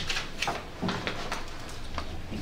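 Room noise in a meeting hall: scattered light clicks and knocks, with a brief snatch of a voice about a second in.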